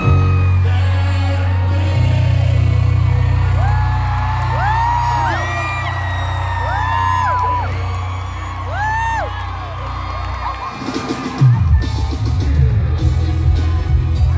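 Live concert sound as a pop song ends: a held low bass chord from the stage music, with fans whooping and screaming over it in several rising-and-falling shrieks a few seconds in. Near the end the low end turns louder and uneven.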